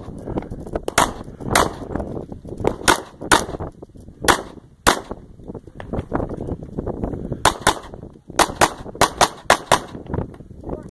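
Pistol shots at a practical shooting stage: pairs of shots about half a second apart, every second or two, then a fast string of shots over the last few seconds as the shooter engages more targets.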